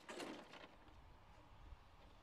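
Near silence: faint background hiss on the commentary feed, with a brief soft vocal sound in the first half second.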